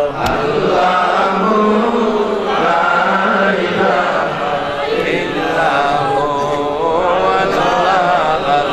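A group of men chanting together in a steady, continuous Islamic devotional chant. A single sharp click sounds just after the start.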